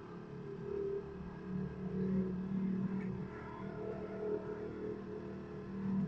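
Motorcycle engine running steadily at low revs as the bike climbs a steep ramp, a little louder about two seconds in and again near the end.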